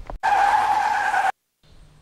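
Tire screech sound effect: one loud, steady squeal lasting about a second, starting and stopping abruptly with a moment of dead silence after it.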